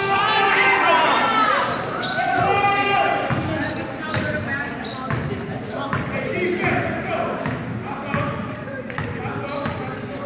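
Basketball bouncing on a hardwood gym floor during a game, with raised voices and shouts echoing through the large hall, loudest in the first three seconds.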